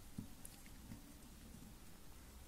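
Near silence: room tone with faint handling as fingers press a glued fabric cat ear, and one soft tap.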